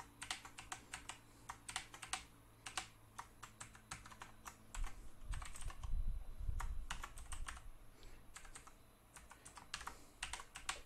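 Typing on a computer keyboard: irregular runs of key clicks, with a low rumble in the middle.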